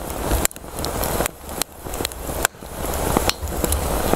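Small twig fire burning in a portable folding wood stove, with sharp crackles and snaps over a steady low rushing noise.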